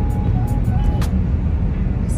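Steady low rumble of road and engine noise inside a moving car's cabin, with a simple melody playing along with it.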